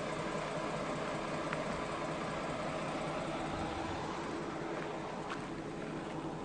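A vehicle running steadily with engine hum and road noise.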